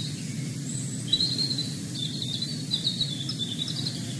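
Small birds chirping and twittering, starting about a second in, over a low steady background rumble.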